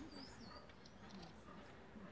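Near silence: faint room tone, with one brief, faint high-pitched chirp of a small bird a fraction of a second in.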